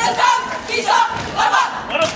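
A marching squad shouting together in a few short, loud calls.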